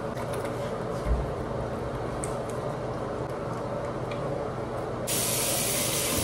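Bathroom sink tap turned on about five seconds in, water running with a steady hiss. Before that, a steady background hum with small clicks and a low thump about a second in.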